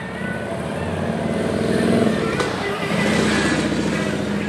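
Engine noise of a nearby motor vehicle, a steady hum that swells to its loudest about two to three seconds in and then eases off.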